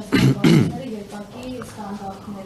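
A man clearing his throat twice in quick succession near the start, two short rasping bursts louder than the talk around them.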